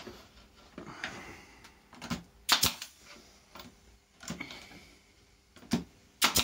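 Pneumatic pin nailer firing pins into pine boards: a few sharp shots with pauses between, the loudest about two and a half seconds in.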